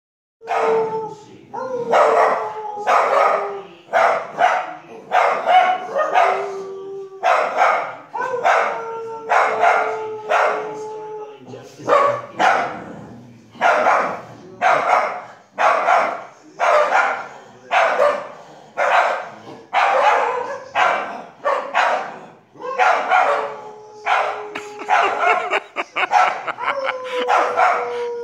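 Two small dogs barking again and again, about one bark a second, mixed with several drawn-out, slightly falling howl-like calls.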